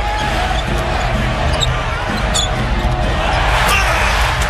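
A basketball being dribbled on a hardwood court under steady arena crowd noise, with a few short, high sneaker squeaks.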